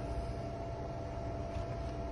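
Steady low background hum and rumble with a faint constant high tone, the room tone of a small back office. There are no distinct events.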